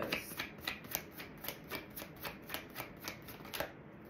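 Tarot deck being shuffled by hand: a quick, even run of soft card clicks, about five a second, that stops shortly before the end.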